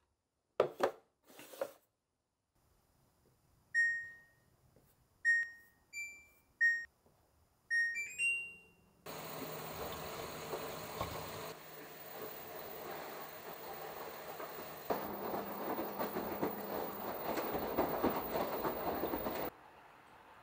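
Two knocks of a plastic container set down on a shelf. Then the LG WashTower washer's control panel beeps several times at button presses and plays a short rising chime as the cycle starts, followed by water rushing into the drum and laundry sloshing as it tumbles, which stops abruptly near the end.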